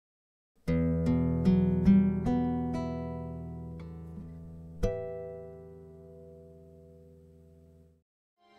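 Nylon-string guitar picking a slow rising arpeggio of about seven notes, then striking one louder chord about five seconds in that rings and slowly fades.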